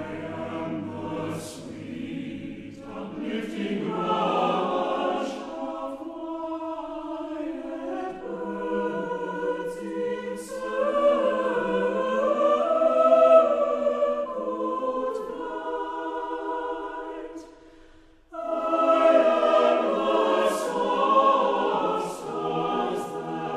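A choir singing a slow piece in long, held notes, with a short break near the end before the voices come back in.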